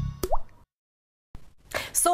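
The end of a TV show's intro jingle, finishing on a short cartoon plop sound effect that rises quickly in pitch, then a cut to dead silence of about a second before studio room sound comes in.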